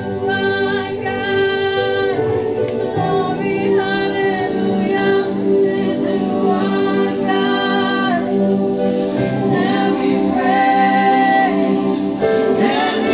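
A group of voices singing a song together, holding long notes and moving steadily from one to the next.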